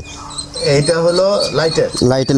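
A man talking in Bengali, with high, short bird chirps in the background.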